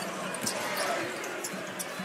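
Basketball dribbled on a hardwood court, a few sharp bounces over the steady noise of an arena crowd.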